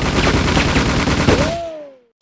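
Rapid automatic gunfire sound effect, a dense run of shots that fades out near the end, with a tone that rises and then falls as it dies away.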